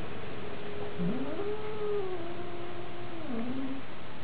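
A cat giving one long, drawn-out meow about a second in: it rises in pitch, holds, then drops near the end.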